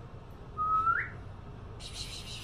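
A short whistle, held on one note for about half a second and then sliding up sharply at the end, followed near the end by a soft rustle.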